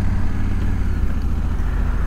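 2020 Honda Africa Twin's 1,084 cc parallel-twin engine running steadily as the motorcycle rolls along at low speed, a low rumble with a light hiss of road and air noise over it.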